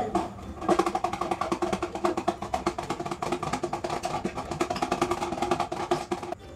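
A spoon stirring a cup of water, sugar and dish soap, clinking fast and evenly against the cup's sides with a ringing tone. The clinking starts just under a second in and stops just before the end.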